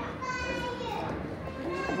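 A young child's voice calls out in one drawn-out, high-pitched sound lasting about a second, over the hubbub of other children playing.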